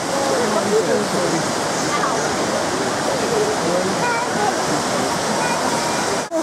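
Steady rushing of a waterfall cascading down over rocks, with faint chatter from other people mixed in.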